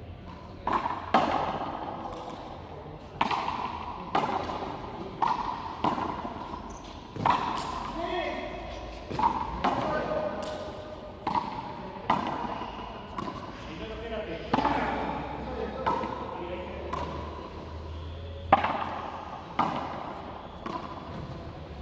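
Hand-pelota rally: the hard ball is struck by bare hands and smacks against the frontón walls, sharp cracks about once a second, each one echoing around the walled court.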